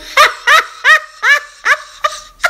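A woman's voice laughing in short, rising 'ha' syllables, about three a second, six in all.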